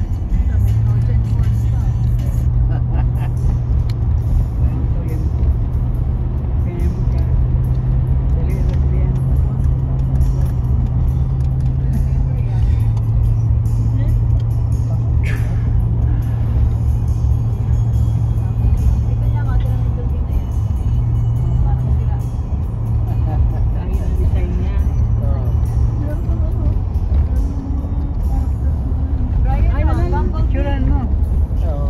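A car being driven slowly, heard from inside the cabin: a steady low engine and road drone with heavy rumble beneath it, its pitch dropping slightly about twelve seconds in. Faint voices or music sit underneath.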